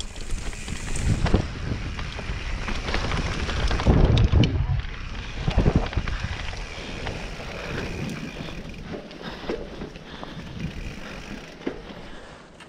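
Mountain bike rolling slowly down a tacky dirt trail, tyres on dirt and the bike rattling with occasional clicks, while wind buffets the microphone in low rumbling gusts, the strongest about four seconds in.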